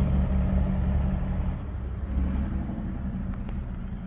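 The 2020 GMC Terrain's 2.0-litre turbocharged four-cylinder idling, a steady low hum heard inside the cabin, easing slightly in level partway through.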